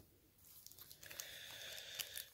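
Faint crinkling and tearing of a foil trading-card pack wrapper being pulled open by hand, starting about half a second in.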